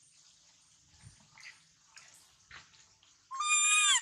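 A baby macaque gives one loud cry near the end, a held, high call lasting well under a second that drops in pitch as it stops. Before it there are only faint scattered clicks and rustles.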